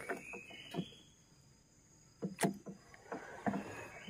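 Scattered light knocks and clicks from fishing gear being handled in a small boat, with one sharper knock about halfway through.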